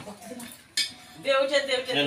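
A metal snake hook clinking and scraping against a concrete floor, with one sharp clink a little before the middle.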